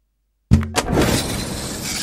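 TV channel ident sound effect: silence, then about half a second in a sudden hit followed by a steady noisy rush.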